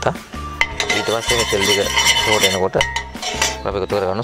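A metal ladle stirring liquid in a stainless steel pot, clinking and scraping against the pot's sides and bottom in a quick run of small strikes.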